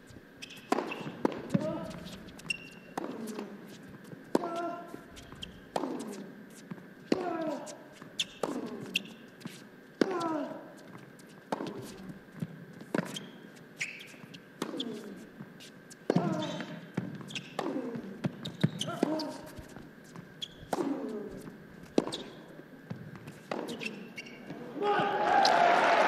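Long tennis rally in an indoor arena: racket strikes on the ball about once a second, most of them with a player's short grunt falling in pitch, and the ball's bounces in between. Near the end the crowd breaks into cheering and applause as the point finishes.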